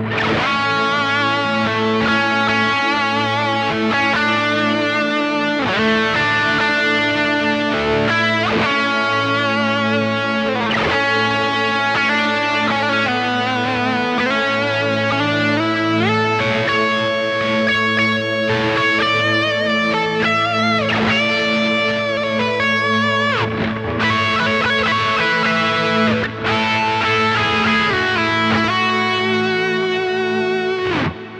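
Electric guitar playing a lead melody with vibrato and bends over a sustained ambient synth pad droning on A.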